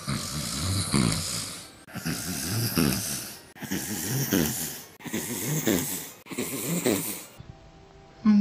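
A person snoring, voicing a sleeping puppet: five snores in a row, about a second and a half apart, cutting off sharply near the end.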